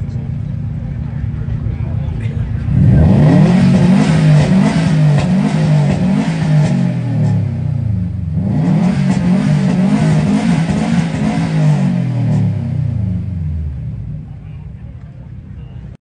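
Subaru WRX STI's turbocharged flat-four engine idling, then revved hard again and again in quick succession, the pitch rising and falling with each blip. The revving comes in two long runs with a short break about eight and a half seconds in, then drops back toward idle near the end.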